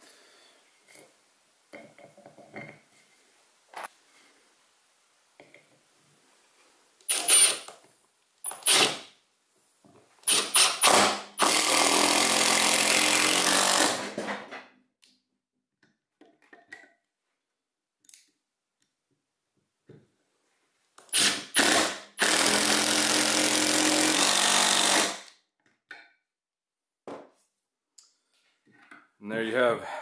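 Milwaukee cordless impact driver running two 2.5-inch Kreg HD pocket-hole screws into a 2x4 joint, each drive lasting about three seconds. Short clicks and knocks come before each drive as the screw and bit are set in the pocket hole.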